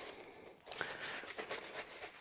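A bristle brush scrubbing a lathered leather shoe, heard as faint, irregular scratchy strokes that start about half a second in.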